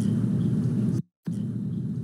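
Steady low rumble of room and microphone background noise, no speech. The sound drops out completely for about a quarter second about a second in.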